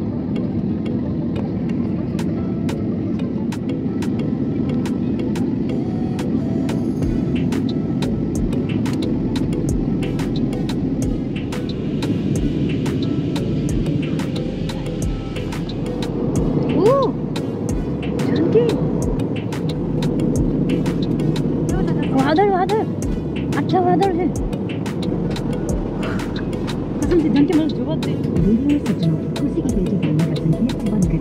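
Steady drone of an airliner cabin in flight, overlaid with music and scattered voices that come and go from about halfway through.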